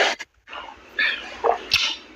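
A man drinking from a bottle: a loud breathy burst, then short breathy sounds with brief squeaky notes, heard over a phone call's audio.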